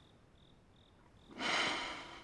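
Faint cricket chirping, short high pulses repeating at an uneven pace. About one and a half seconds in, a short soft rush of noise swells and fades.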